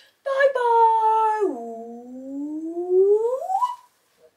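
A woman's voice holding a long wordless note. It drops low about a second and a half in, then glides slowly upward until it cuts off near the end.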